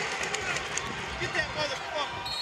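Basketball arena ambience: crowd noise with sneakers squeaking and feet on the hardwood court as players run the floor, and a few short squeaks about three-quarters of the way through.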